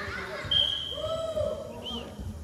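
A high, steady whistle blown once for about a second, with a short second chirp near the end, over voices calling out and a ball being kicked on turf.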